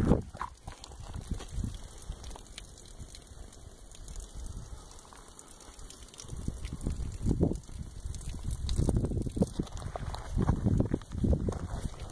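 Wind buffeting the microphone: an irregular low rumble in gusts, weaker in the first half and stronger after about six seconds.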